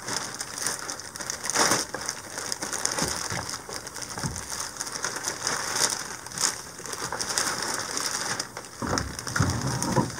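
Large clear plastic bag crinkling and rustling as a trolling motor is pulled out of it, with a few knocks near the end as the motor comes free.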